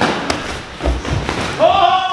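A few dull thuds of Muay Thai sparring: kicks and gloved strikes landing and feet on padded mats. Near the end a man's voice sounds briefly.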